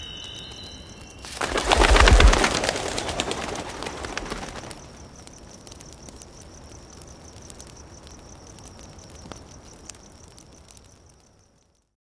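A flock of birds taking off: a sudden burst of rapid wing flapping about a second in, loudest around two seconds and dying away by about five seconds. After it, a faint, high, evenly pulsing chirp carries on until the sound fades out near the end.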